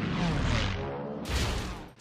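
Film sound effects of propeller fighter planes flying past low, their engine pitch falling as they go by. About 1.3 s in comes a short, sharp crash as Japanese Zeros collide in mid-air, and the sound cuts off just before the end.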